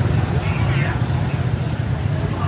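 Busy market street ambience: a steady low rumble of motorbike traffic passing, with faint voices of people in the crowd.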